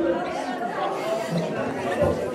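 Indistinct chatter of people talking in a large echoing hall, with no music playing.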